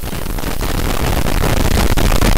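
A loud, harsh, distorted sound effect added in the edit, a dense noisy crackle that keeps getting louder.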